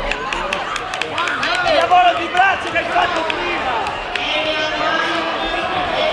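Several voices of spectators talking and calling out over one another in a sports hall, with a scatter of short sharp taps in the first few seconds.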